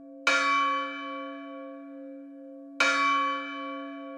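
A deep bell struck twice, about two and a half seconds apart, each strike ringing on in a long, slowly fading hum.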